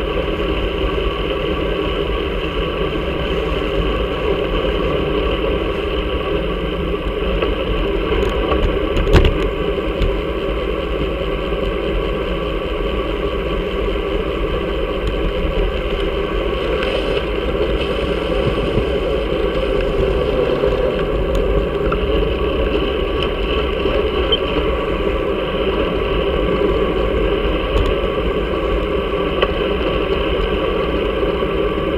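Steady wind and road rumble picked up by an action camera on the handlebars of a moving road bike, with a single sharp knock about nine seconds in.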